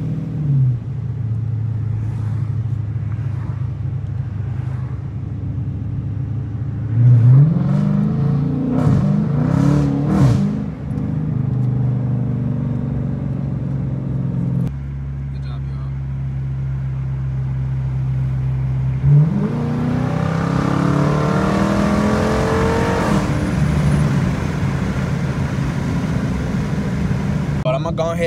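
Dodge Challenger R/T's 5.7-litre Hemi V8 heard from inside the cabin while driving: a steady cruise, then the engine revs up hard about a quarter of the way in, its pitch rising and falling several times, settles back to a steady drone, and pulls up again in a long rising rev past the two-thirds mark.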